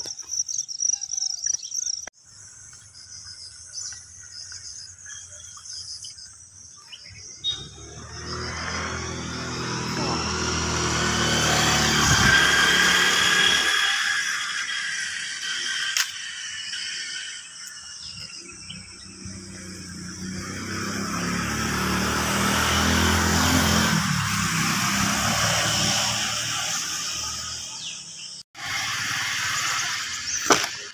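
Crickets chirping at first, then two road vehicles passing one after another, each engine and tyre noise swelling up over several seconds and fading away.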